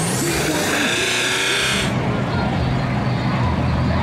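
An off-road race vehicle's engine running, with a man's voice over it. A loud rushing noise stops abruptly about two seconds in.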